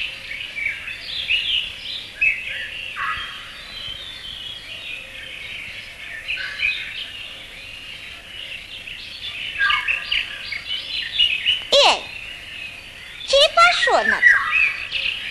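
Cartoon soundtrack of many small birds chirping and twittering without pause, with one quick sweep falling steeply in pitch near the end.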